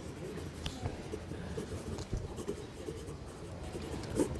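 Quiet chamber room noise: a low, faint murmur with papers rustling and a few small clicks near a microphone.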